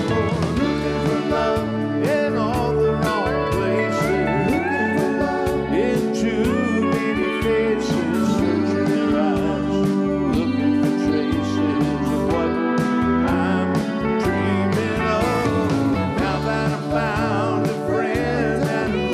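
Live country band playing a song: a steel guitar slides between notes over drums and electric bass, and a man sings.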